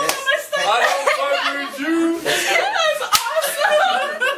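People's voices talking throughout, with two sharp smacks: one right at the start and one about three seconds in.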